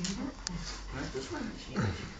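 A dog's short vocal sounds during rough play between a golden retriever and a small white puppy, with a person talking over them.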